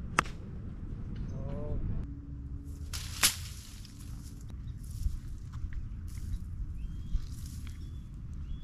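A single sharp crack of a golf club striking a ball about three seconds in, over outdoor wind rumble.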